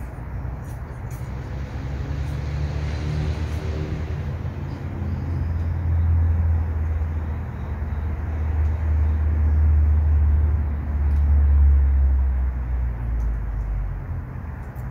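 Low engine rumble of a motor vehicle nearby. It builds over the first few seconds, is loudest in the second half and eases slightly near the end.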